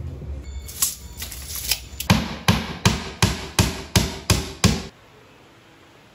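Hammer blows on wood: a few lighter taps, then eight even, hard strikes at about three a second before it stops.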